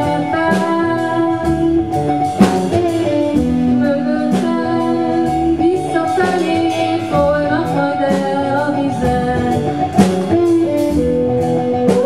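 Live band playing: a woman singing over electric guitar, bass guitar and drum kit, with two sharp drum-and-cymbal hits standing out, one a couple of seconds in and one near the end.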